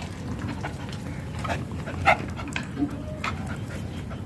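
A handful of short, sharp animal calls, the loudest about two seconds in, from the farmyard animals.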